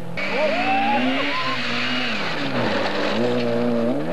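Rally car engine at high revs on a gravel stage, cutting in suddenly just after the start; its pitch climbs, falls away about two and a half seconds in, then climbs again, over a haze of tyre and gravel noise.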